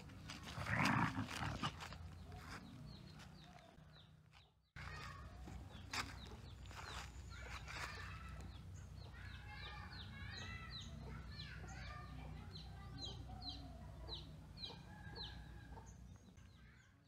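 Two dogs play-fighting, with a loud, rough growl about a second in, then many short chirping calls in the background.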